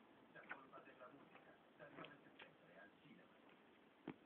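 Faint, scattered light ticks and soft fabric rustling from a cat moving under a blanket, playing at a pencil lying on top.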